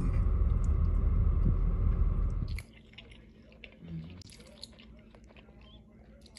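A steady low car-cabin rumble for the first two and a half seconds, cut off suddenly. Then a quiet room with faint chewing and small mouth clicks of someone eating.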